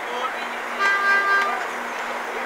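A vehicle horn toots once, a steady note lasting under a second, about a second in, over street noise and a steady low hum.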